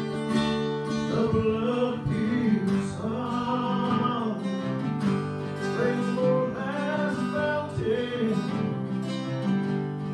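A man singing while playing an acoustic guitar.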